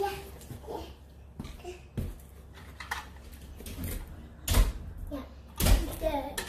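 Thumps and bumps of a toddler climbing and dropping onto a leather sofa's cushions, with his short vocal sounds in between. The two heaviest thumps come near the end.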